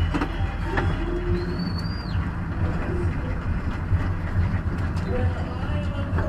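Steady low rumble of a car's engine and tyres heard from inside the cabin as the car creeps along at walking pace. A few faint whistle-like tones sit on top, one rising and holding high about a second and a half in.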